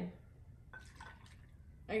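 Milk poured from a small pitcher into a bowl of cereal: a faint pour with a few light drips and ticks.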